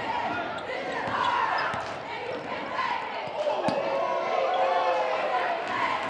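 Basketball game on a hardwood gym floor: a ball bouncing and players' running feet, under a steady layer of crowd voices and shouts echoing in the gym.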